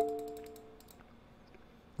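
A chime-like ringing tone of a few pitches that fades away over about a second, with a few light clicks, then near silence.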